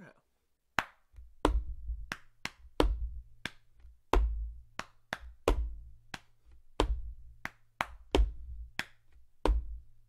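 A body-percussion drum beat played by hand. Sharp, high taps of a hand on a wooden tabletop stand in for the snare, and lower pats on the chest stand in for the bass drum. The beat starts about a second in and repeats steadily about every second and a half.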